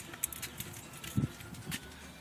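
A few light clicks and a soft low thump a little after a second in: handling noise as the camera is moved around inside the truck's cab.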